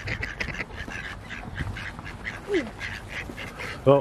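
A flock of mallards calling: a steady run of quick, short, repeated quacks from several ducks at once.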